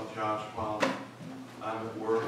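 Indistinct voices talking at the front of the room, with one sharp click a little before the middle.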